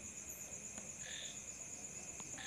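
Faint background of insects trilling: a steady, high, pulsing note throughout, with a short faint call about a second in.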